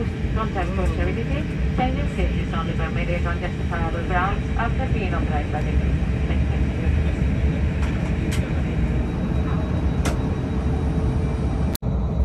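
Steady low rumble of an Airbus A321's engines and cabin air, heard from inside the cabin as the aircraft taxis. A cabin announcement voice runs over it for the first few seconds, and the sound cuts out for an instant just before the end.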